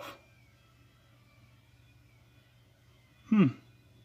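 Near silence: room tone with a faint steady low hum, then a man's short 'hmm' near the end.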